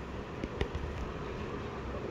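Low steady background hum, with two faint light taps about half a second in from handling a paper message card.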